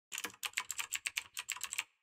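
Rapid typing on a computer keyboard: about a dozen quick keystrokes over a second and a half, stopping shortly before the end.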